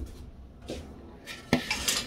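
Handling sounds at a front-load washer's drain hose, as the hose clamp is worked with pliers and a collecting pot is put under it: faint rustling, then one sharp click about a second and a half in.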